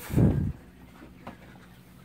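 A brief low rumble in the first half second, then the faint steady hum and trickle of a reef aquarium's sump equipment running.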